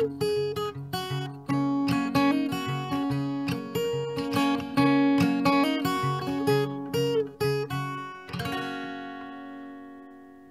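Acoustic guitar playing the song's closing instrumental passage in a steady picked rhythm, then one last strummed chord about eight seconds in that is left to ring and fade away.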